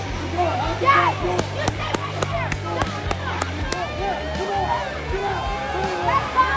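Voices calling out in a busy hall over background music, with a few sharp taps in the first half.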